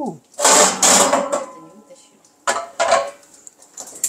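Metal oven rack scraping as it is pulled out of a Rinnai gas oven, then two sharp knocks. Near the end, a fast even run of clicks begins from the gas oven's electric igniter as the oven lights.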